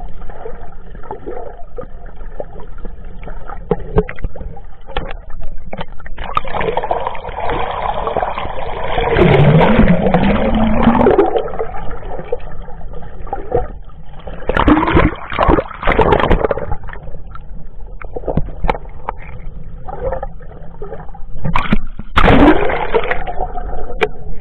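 Seawater gurgling and sloshing heard from under the surface, muffled and uneven, with louder surges about nine to eleven seconds in, around fifteen seconds, and again near the end.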